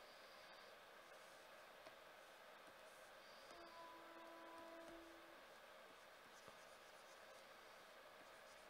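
Near silence: faint scratching and light taps of a pen stylus on a graphics tablet, with a faint steady tone a little past the middle.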